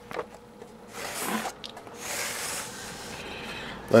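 Handling noise from a clock radio's cabinet being turned around and slid on a shelf: a knock, then two spells of rubbing and scraping.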